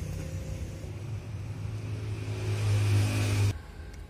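A motor vehicle's engine running close by with a steady low hum that grows louder, then cuts off suddenly near the end.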